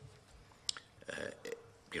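A man's hesitant speech: a short filler 'uh' in the middle, then the start of the next word near the end, with quiet pauses between.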